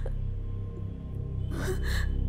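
Film background score of low, sustained notes, with a short breathy gasp, a sharp intake of breath, about one and a half seconds in.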